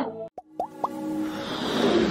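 Animated-intro sound effects: a few quick rising plops about half a second in, then a whooshing swell that builds steadily in loudness.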